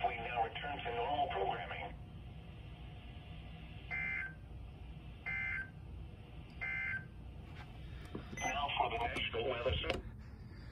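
Weather radio receivers play the NOAA Weather Radio broadcast's voice, then three short, identical data bursts about a second and a half apart: the SAME header that opens the required monthly test. Voices return near the end.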